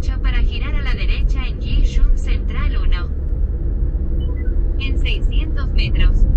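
Low, steady rumble of a car driving on a city road. A voice talks over it for about the first three seconds and again near the end.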